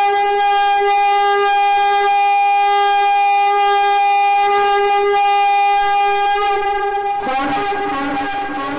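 A horn blown in one long, steady note as part of a TV channel's ident. It breaks off about seven seconds in, giving way to a brief rush of other sounds.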